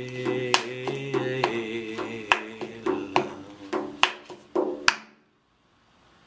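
A man's voice carries a wordless melody in a low register, over hand beats struck on a padded chair arm roughly once a second, with lighter taps between. Both stop abruptly about five seconds in.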